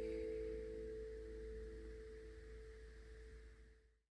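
Acoustic guitar's final chord ringing out, a few sustained notes slowly fading, then cut off suddenly at the very end.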